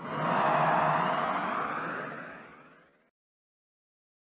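A single whoosh transition sound effect with a rising sweep in it, swelling up at once and then fading out over about three seconds.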